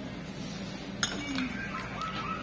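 Steel nail-care tools clinking as they are handled, with one sharp metallic clink about a second in and a lighter click just after.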